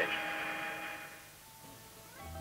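Steady aircraft cabin hum with a few held tones, fading out about a second in to a low hiss.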